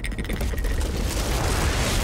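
Lake ice cracking under a heavy truck, a trailer's sound-designed deep rumbling boom thick with crackles that cuts off suddenly at the end. The ice is giving way and the crack is spreading.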